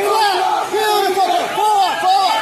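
Several people shouting loudly over one another, crowd yelling with raised voices throughout, in a large echoing hall.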